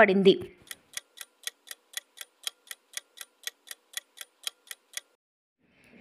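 Clock-ticking sound effect, about four even ticks a second for some four seconds, then stopping: a countdown while a quiz question waits for its answer.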